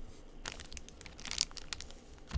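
Crinkling and tearing of the plastic wrap on a trading-card pack: a quick run of small crackles lasting about a second and a half.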